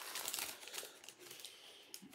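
Paper sandwich wrapper crinkling as a sandwich is unwrapped and pulled from its cardboard takeout box. The rustling is busiest for about the first second and a half, then dies away.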